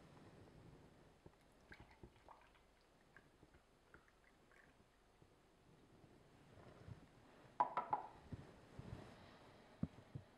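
Fresh orange juice being poured from a juicer's jug into a drinking glass, faint, with a short knock and brief ring a little before eight seconds in.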